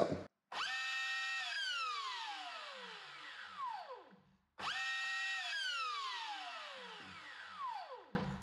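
Large brushless motor of an RC car on 8S, run up twice at full throttle. Each time it reaches a high whine at once, holds it for about a second, then winds down in a long falling whine. The immediate spin-up shows that the initial full-throttle protection is cancelled for a drag launch.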